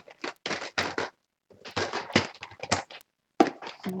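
Small objects being handled and set down on a table: a string of short knocks and rustles, with two brief pauses.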